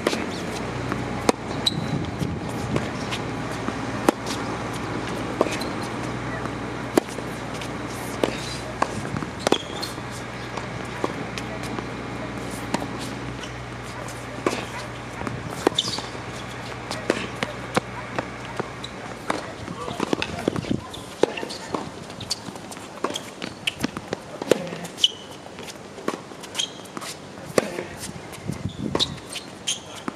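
Tennis ball being struck by rackets and bouncing on a hard court, a string of sharp pops and knocks through the rallies. A steady low hum runs underneath and stops about two-thirds of the way through.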